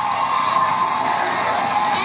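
Studio audience applauding and cheering, a steady wash of clapping.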